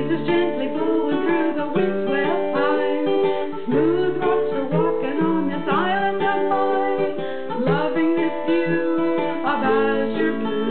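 Instrumental passage of a song on an acoustic plucked string instrument, with chords and picked notes sounding continuously.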